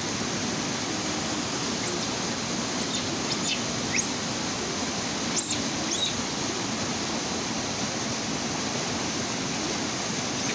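Steady rush of flowing river water, with several short, high chirps in the first half.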